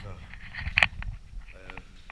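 A brief rushing sound that ends in one sharp, loud clack a little under a second in, followed by a dull thud and a few faint clicks.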